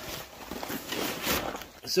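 Fabric of a large camouflage ruck bag rustling and scraping as it is pulled open and handled, in an uneven stream of rustles.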